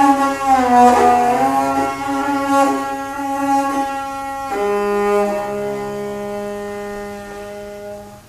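Morin khuur (Mongolian horsehead fiddle) bowed in long held notes. The first note slides down about a second in, and a lower note takes over about halfway through and is held nearly to the end.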